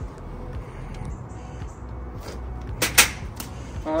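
Two sharp knocks close together about three seconds in, over a low steady background rumble.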